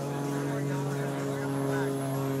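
Chrysler Turbine Car's gas turbine engine running at idle: a steady hum of several even pitches, with a higher tone joining right at the start, under crowd chatter.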